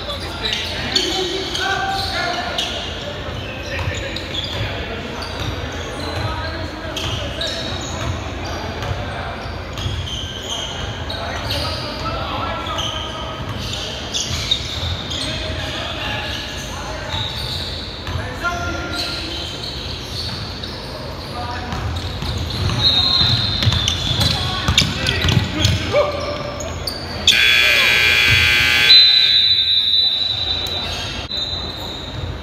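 A basketball bouncing and dribbling on a hardwood gym floor during play, with players' voices echoing in the large hall. Near the end, a loud, harsh tone sounds for about two seconds.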